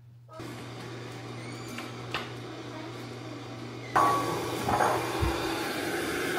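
A steady low hum with one click for the first few seconds. Then, about four seconds in, a wooden spoon stirs meatballs in broth in a stainless steel pot, with a few knocks against the pot.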